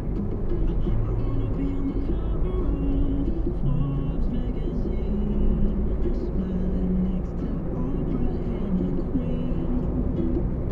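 Steady low road and engine rumble of a car driving, as heard from inside the cabin, with music and a voice playing over it.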